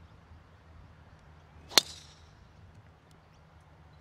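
Driver striking a golf ball off the tee: one sharp crack a little under two seconds in, with a brief high ringing tail.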